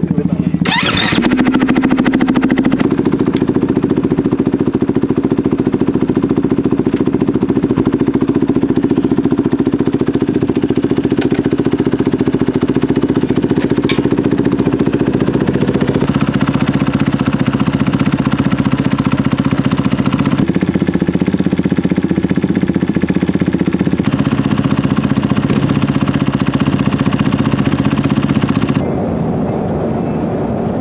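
KTM 500 EXC-F single-cylinder four-stroke dirt bike engine running at a steady idle, after a short sharp burst about a second in.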